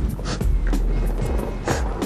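A skateboard lands a drop onto concrete about half a second in, and its wheels then roll on the pavement, over background music.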